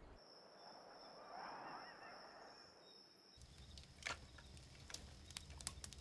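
A faint wavering call in quiet ambience, then from about three seconds in a campfire crackling, with scattered sharp pops over a low rumble.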